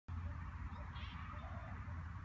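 Wind on the phone's microphone outdoors, a steady low rumble, with faint indistinct sounds above it about a second in.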